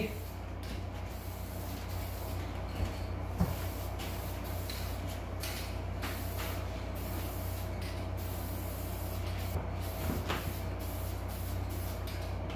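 Aerosol spray can of Dupli-Color flat black vinyl paint hissing in a run of sweeping passes, with brief breaks between strokes, over a steady low hum.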